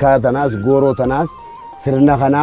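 A low male voice chanting a melodic refrain. It breaks off a little over a second in and starts again at the very end.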